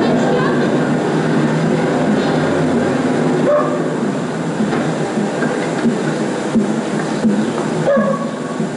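Steady, dense rumble of city street noise with faint, indistinct voices mixed in, heard through an old film soundtrack.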